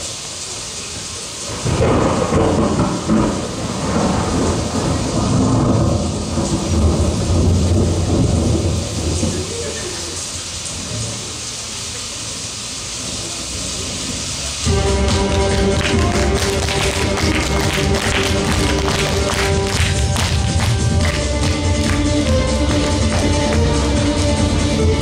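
Thunderstorm sound effect played over the show's sound system: rain hiss with rolls of low thunder. About fifteen seconds in it gives way abruptly to a music track with a steady beat.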